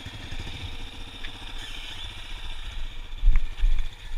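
Yamaha Raptor 350 quad's single-cylinder engine running at low speed, heard from on board as a steady, rhythmic exhaust pulse. Two loud, low thumps come near the end.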